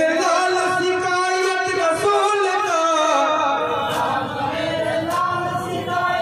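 A group of men singing a marsiya, an elegy for Imam Husain, together in one melody with long held notes.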